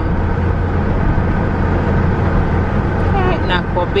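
Car cabin noise while driving: a steady low drone of engine and tyres on the road. A voice speaks briefly near the end.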